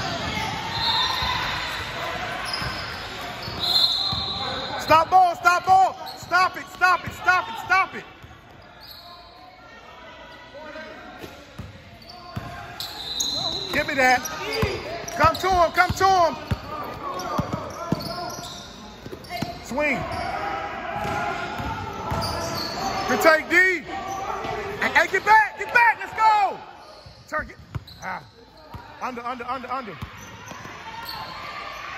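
A basketball being dribbled on a gym floor, with bursts of sneaker squeaks as players cut and stop, three loud flurries of them. Voices carry in the background, and the sounds echo in the large hall.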